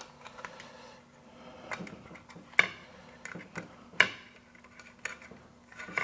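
Light clicks and taps of a plastic thermostat trim plate and its wires being handled against the wall as the wires are pulled through the plate's centre hole, with two sharper knocks a little past halfway.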